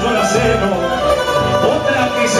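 Live band playing an instrumental passage of a Cuyo folk song, with stringed instruments carrying the melody.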